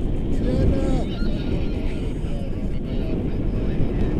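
Airflow of a paraglider in flight buffeting the camera microphone, a loud steady rumble. Faint snatches of a voice rise out of it about half a second in and again near the middle.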